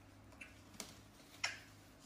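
Three short, light clicks over a faint low hum; the last and sharpest comes about one and a half seconds in.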